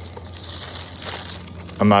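Clear plastic bag crinkling as the plaque sealed inside it is handled and pulled at.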